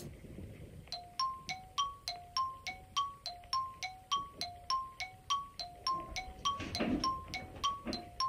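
A repeating two-note electronic chime that starts about a second in, alternating between a lower and a higher tone about three notes a second, each note struck and then fading.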